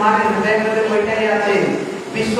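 Speech only: a man's voice talking.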